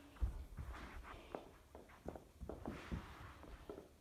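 Soft, irregular taps and thuds of a hockey stick blade moving a ball across carpet, mixed with bare footsteps.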